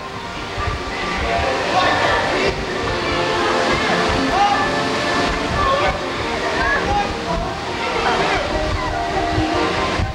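Many children's voices shouting and calling over one another, with water splashing in a pool.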